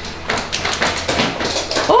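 A dog's paws tapping quickly on wooden stairs as it comes down, getting louder as it nears; a voice starts right at the end.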